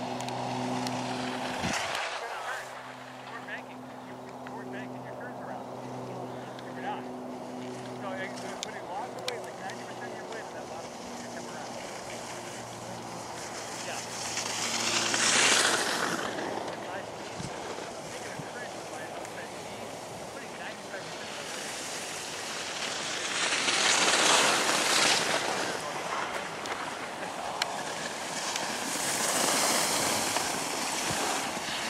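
Skis sliding and scraping over packed snow with wind on the microphone, swelling into loud rushes about halfway through, again a few seconds later, and near the end. A steady low hum runs under the first half, then fades out.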